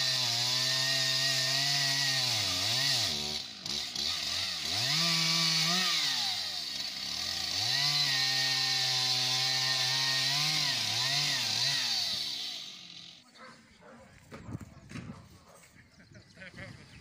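Petrol chainsaw cutting a log, running at high revs with its engine pitch dipping and picking up again several times; it stops shortly before the end.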